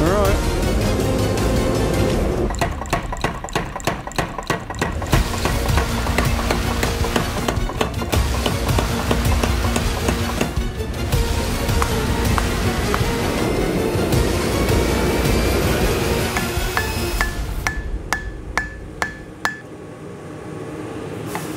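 Power hammer striking hot blade steel in a quick regular run of blows, about four a second, over background music. Near the end, hand-hammer blows on the anvil ring out at about three a second.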